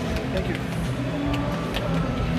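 Indistinct background chatter with faint music over a steady low rumble of room noise.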